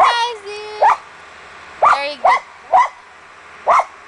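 A child's voice in a long falling whine, then a dog barking five times in short, sharp, irregularly spaced barks.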